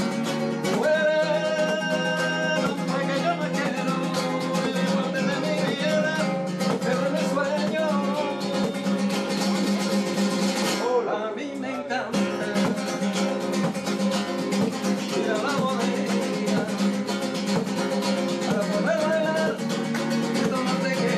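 Nylon-string classical guitar strummed in a fast, driving flamenco-style rhythm, with a brief break in the strumming just past the halfway point.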